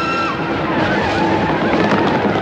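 Steam locomotive running, with a steady rush of hissing steam; a held note of the brass score cuts off just after the start.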